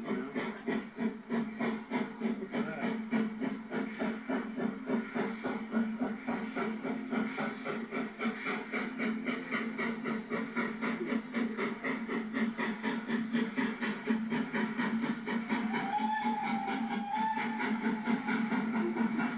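Main-line steam locomotive working hard as it approaches with a train: a fast, even beat of exhaust chuffs that runs through the whole stretch. Near the end a faint wavering whistle tone lasts about two seconds.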